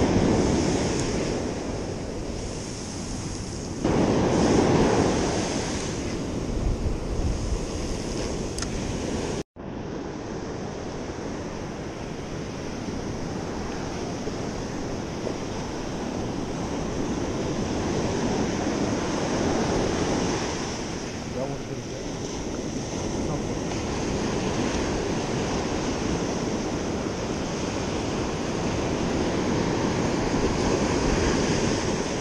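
Ocean surf breaking and washing up a sandy beach as a steady rush, swelling louder about four seconds in, with wind blowing across the microphone.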